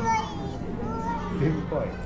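Voices in a busy indoor public hall: a small child's voice among the chatter of other children and adults.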